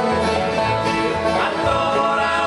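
Live bluegrass band playing: banjo and acoustic guitars picking over an upright bass plucking about two notes a second.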